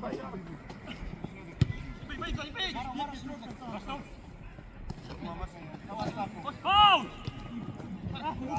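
Live sound of an amateur football match in play: players calling and shouting across the pitch, with one loud shout near the end. There is a single sharp thud about a second and a half in, a ball being kicked.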